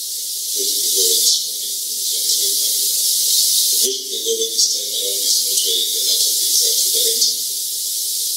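A loud, steady hiss over thin, muffled speech, the voice stripped of its low and middle range as on a badly degraded recording.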